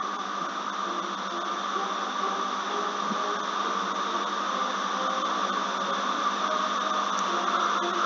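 Steady background hiss with a faint hum underneath, unchanging throughout, with no distinct events.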